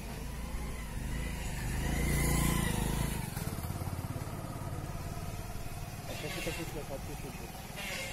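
A motor vehicle engine passing by: a low hum swells to its loudest about two to three seconds in, then fades, with faint voices near the end.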